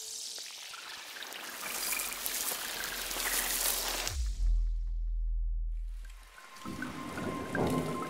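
Intro sound effects over an animated paint splash: a hissing whoosh swells for about four seconds, then a deep bass boom hits and fades over about two seconds. A second whoosh builds near the end, with a faint steady tone in it.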